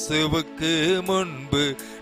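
A man singing a Tamil Christian worship song in short, gliding phrases, accompanied by a Yamaha PSR-S950 arranger keyboard.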